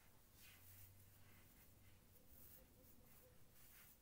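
Near silence: quiet room tone with a few faint rustles of cotton yarn as a crocheted pouch is handled.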